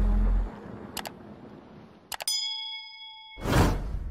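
Sound effects of an animated video intro: a low boom that fades away, a click, then a bright bell-like ding that rings for about a second and is cut off by a short whoosh near the end.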